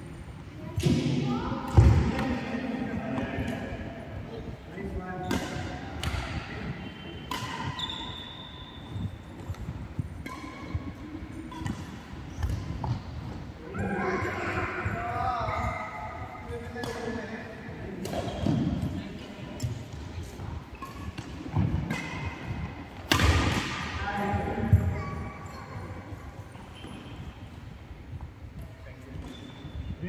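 A badminton rally in a large hall: sharp, irregular racket strikes on the shuttlecock and thuds of feet on the court, with people's voices in between.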